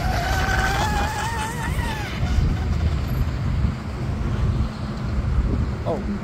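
Steady low rumble of wind buffeting the microphone, with a faint wavering whine in the first two seconds.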